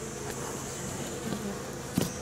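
Honeybees buzzing steadily on an open hive's comb frame, with a single sharp knock at the very end.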